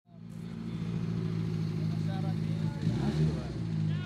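Several car engines idling together, a steady low hum that fades in at the start, with a brief shift in pitch near the end.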